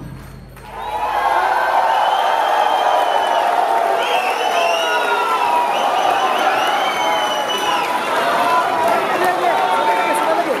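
Dhol and tasha drumming cuts off right at the start; after a brief lull, a large crowd cheers and shouts steadily, many voices at once.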